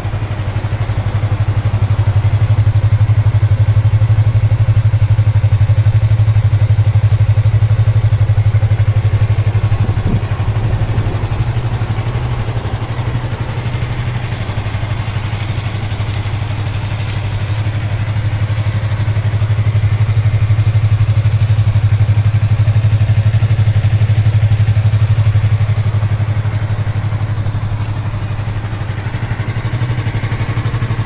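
Yamaha YZF-R3's 321 cc parallel-twin engine idling steadily through its exhaust, with no revving. Its level swells and fades gently a couple of times.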